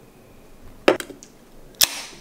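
Aluminium beer can (Karbach Hopadillo IPA) set down on a wooden table with a sharp tap about a second in, then its pull-tab cracked open with a sharp click and a short hiss of escaping gas near the end.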